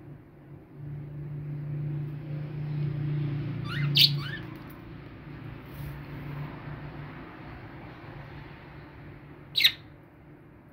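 Two short, sharp budgerigar chirps, one about four seconds in and one near the end, over a low steady hum.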